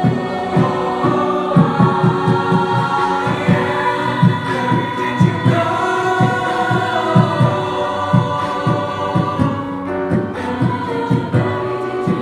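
Mixed choir singing a cappella in sustained harmony over a steady low pulsing beat, with a lead voice on a handheld microphone.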